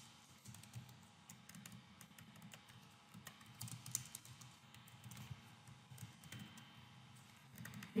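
Faint typing on a computer keyboard: irregular key clicks as a line of code is entered.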